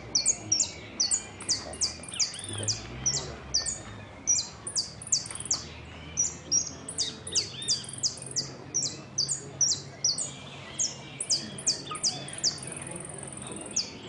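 Caged saffron finch (Argentine jilguero) singing a long, unbroken song of rapid, high, sharp notes, about three a second. A longer buzzy trill comes near the end.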